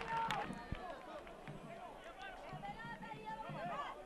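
Faint ambient sound of a football match: scattered distant shouts and calls from players and spectators over a light background hum, with one dull low thud less than a second in.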